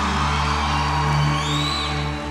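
A live band sustaining an instrumental chord over a deep held bass note between sung lines. Near the end, a high whistle from the audience rises and falls over the music.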